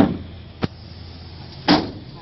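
A wooden board dropped flat onto the steel tray of a Toyota Hilux ute with a loud knock, a sharp click just over half a second later, then the tailgate swung shut with a second loud thud near the end.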